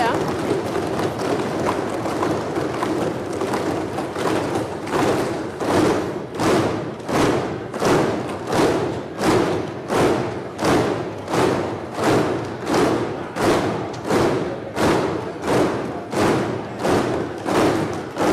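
Members of parliament applauding by thumping their desks and clapping. It starts as a jumble, then from about four seconds in settles into a steady unison beat of a little under two thumps a second.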